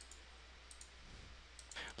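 Faint computer mouse clicks over quiet room tone: a couple close together under a second in and another near the end.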